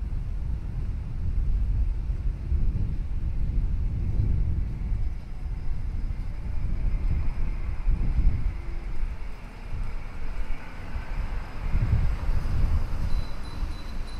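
Wind buffeting the microphones as a low, gusty rumble that swells and falls every second or two.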